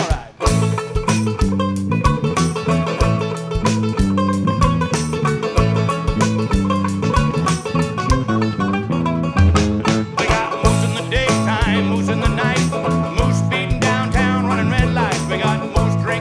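A band playing an instrumental break: banjo picking over a drum kit keeping a steady beat and a moving bass line.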